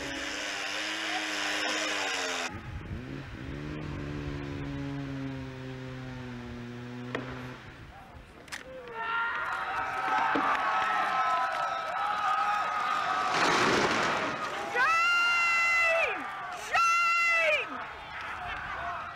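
An outdoor crowd with raised, shouting voices, ending in two loud, long, held cries near the end.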